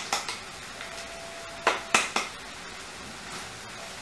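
Onions frying in a pan with a faint steady sizzle as ground spice powder is tipped in, broken by a few sharp knocks of utensils against the pan, one near the start and two or three about two seconds in.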